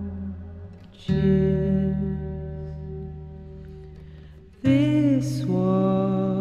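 Acoustic guitar chords strummed and left to ring out and fade, with a fresh chord struck about a second in and another near five seconds. A soft, brief vocal comes in with the second chord.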